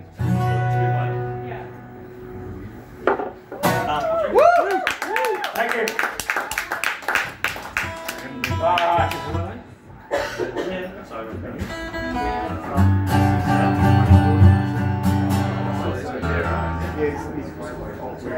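Electric guitar played live through an amplifier: a held low note, then notes bent up and down, then sustained chords.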